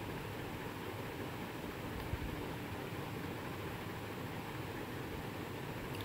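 Steady background hiss of room tone picked up by the narrator's microphone, with a faint click about two seconds in.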